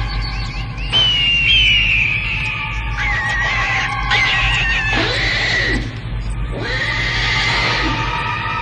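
Film soundtrack: eerie sustained music chords under a series of high, wavering, gliding cries, the first about a second in. Two whooshing swells with sweeping pitches follow near the middle and near the end.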